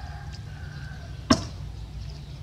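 A single sharp knock about a second in, over a steady low background rumble.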